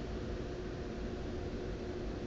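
Steady low background hiss of room tone with a faint constant hum, and no distinct sounds.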